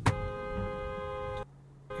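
Car horn sounding a long blast that cuts off about a second and a half in and starts again near the end, a steady chord of a few fixed pitches.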